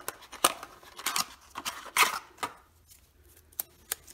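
Small cardboard box being opened and handled and a roll of glue dots pulled out of it: a string of sharp clicks and short papery scrapes, the loudest about half a second and two seconds in.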